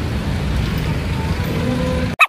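Street traffic on a busy city road at rush hour: a steady rumble of cars and other motor vehicles passing close by.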